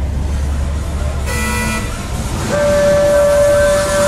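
Car horns over the low rumble of car engines: a short toot about a second in, then a long, steady honk held from about halfway through.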